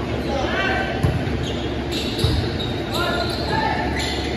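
Volleyball rally in a large gym hall: the ball is struck sharply about one second in and again a little after two seconds. Sneaker squeaks on the hardwood floor and players' voices carry through the hall.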